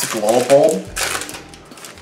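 A man talking for about the first second, then the crinkle and rustle of a foil trading-card booster pack being handled and opened, starting with a short click.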